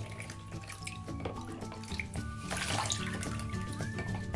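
Background music, with water from a cup being poured and splashing over a guinea pig in a shallow plastic tub; the splashing is heaviest a little past halfway through.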